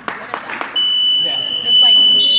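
A basketball bounces on a hardwood gym floor, several quick knocks. Then, about three quarters of a second in, the gym's scoreboard buzzer sounds a loud, steady high tone and holds it.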